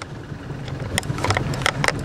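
Tow boat's outboard or inboard motor running at low speed with a steady low hum, with wind on the microphone and a few short sharp knocks over it in the second half.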